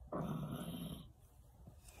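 A man smoking marijuana: one noisy breath of smoke about a second long, followed by a faint throat-clear near the end.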